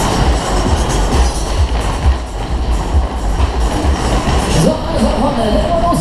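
Low, steady rumble of a Kalbfleisch Berg-und-Tal-Bahn ride car running round its hilly circular track, with ride music playing over it.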